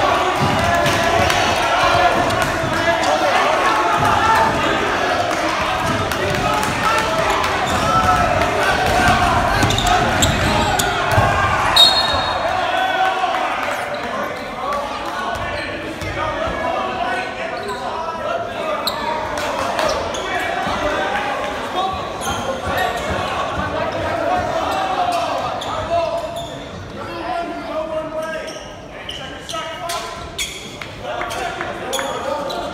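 Basketball game in a gym: a ball bouncing on the hardwood floor with players' and spectators' indistinct voices echoing around the hall. The first dozen seconds are busy. A brief high-pitched tone comes about twelve seconds in, and after it things go quieter, with only occasional bounces and voices while play stops for a free throw.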